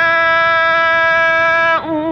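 A male Quran reciter's voice holding one long, steady note on a single vowel, then breaking into a wavering ornament near the end. It is heard on an old, narrow-band live recording.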